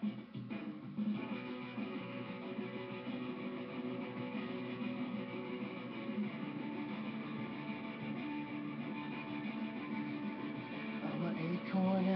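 Guitar playing the instrumental opening of a song, chords held and ringing; a singing voice comes in right at the end.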